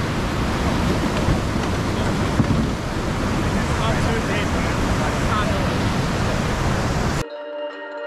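Rushing whitewater of a steep river rapid, a steady noise with no let-up, cutting off suddenly near the end as music begins.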